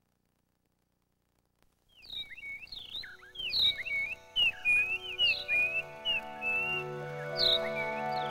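Silence for about two seconds, then a burst of rapid, sweeping bird chirps. From about the middle, soft sustained music notes swell in underneath the chirps and grow louder.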